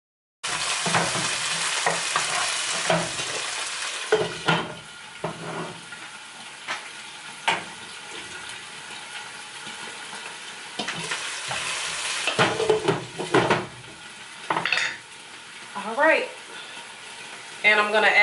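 Chopped cabbage and onions frying in a little oil in a frying pan, sizzling loudest in the first few seconds, with a wooden spoon stirring and knocking against the pan now and then.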